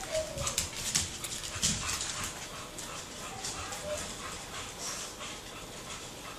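Dog moving about on a wooden floor, its claws clicking rapidly and scrabbling over the first two seconds or so, then more sparsely, with a few faint whimpers.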